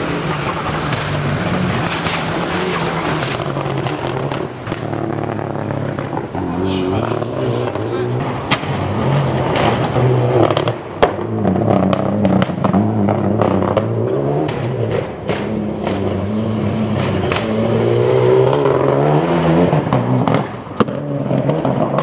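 Rally car engines revving hard as the cars run through a street stage, the pitch climbing and dropping with throttle and gear changes. There is a single sharp crack about halfway through.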